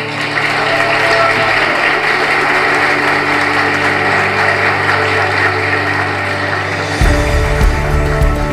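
Soundtrack music with sustained tones under a dense wash of noise from the congregation applauding the couple's kiss after the vows. About seven seconds in, the applause thins and a deep pulsing beat comes into the music.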